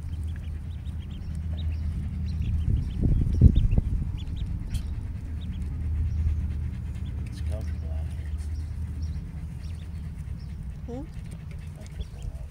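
Ducklings peeping softly in short high chirps, over a steady low rumble of wind on the microphone, with a brief louder low sound about three and a half seconds in.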